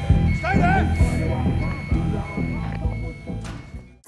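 TV drama soundtrack: a car engine's low hum heard from inside the cabin, under music, with a brief voice about half a second in. The sound fades away toward the end.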